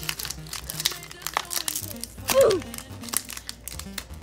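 A foil Pokémon booster pack wrapper being torn open and crinkled by hand, with quick crackles throughout, over background music with a steady beat. About midway a short sound glides down in pitch and is the loudest moment.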